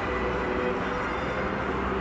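Steady background din of a large hall, an even rumble and hiss with no distinct event standing out.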